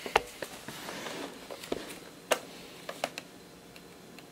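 Scattered light taps and clicks as bare feet step onto a digital bathroom scale on a tile floor, the sharpest a little past halfway.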